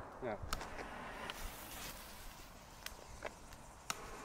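Quiet outdoor background hush with a few faint, isolated clicks, after one short spoken word at the start.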